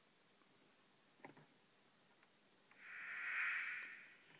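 Serge modular synthesizer's New Timbral Oscillator frequency-modulated by the Timing Pulse's one-bit noise, giving a band of hiss centred on a high pitch. It fades in near the end, swells and starts to ease off, after a faint click a little over a second in.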